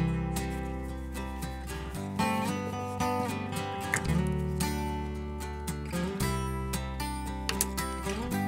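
Background music: a strummed acoustic guitar, its chords changing about every two seconds.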